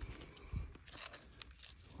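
Gloved hand digging into clay and loose quartz rock: faint crunching and scraping, with a few short knocks about half a second and a second in.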